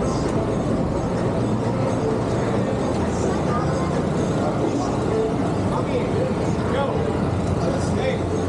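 Busy city street ambience: steady traffic noise with a low engine hum, and voices of passers-by mixed in.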